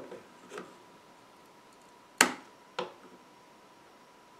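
Pliers working a small plug-in connector loose from a ThinkPad X220 motherboard: a few small sharp clicks of metal jaws on plastic, a faint one about half a second in, the loudest a little after two seconds, and a lighter one just after it.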